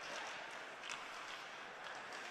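Faint ice hockey rink sound: a steady low hiss of play on the ice, with two faint clicks about a second in and near the end.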